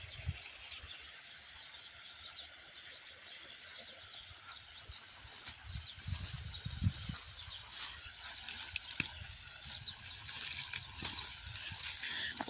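Outdoor rural ambience: a steady high hiss with faint bird chirps, and a few low bumps about halfway through.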